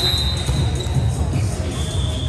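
Volleyball rally in a large gymnasium: thuds of the ball being played over background music with a steady bass beat, and voices.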